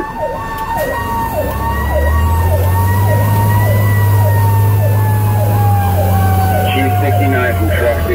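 Fire rescue truck sirens heard from inside the cab: an electronic siren yelping about twice a second, layered over the steady wail of a mechanical Federal Q siren that slowly falls in pitch as it winds down. A low engine drone runs beneath them for most of the time.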